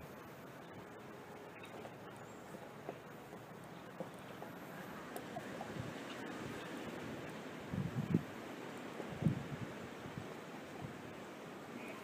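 Faint handling noise as a brass backflow preventer is spun onto a threaded fitting by hand: light rubbing and small clicks, with a few dull knocks about two-thirds of the way in, over a steady hiss of outdoor air.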